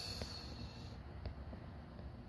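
Quiet room tone with a faint hum, broken by two faint short clicks, one just after the start and one a little past the middle.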